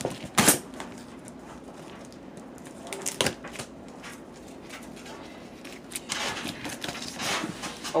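Cardboard box sealed with electrical tape being pulled open by hand: sharp cracks of tearing tape and cardboard just after the start and again about three seconds in, then a longer rustle and scrape of the flaps opening near the end.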